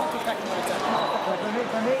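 Overlapping voices and the general chatter of a busy indoor hall, with a man's voice saying "that's" near the end.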